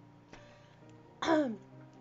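A woman clears her throat once, a short loud ahem about a second in, over soft background music.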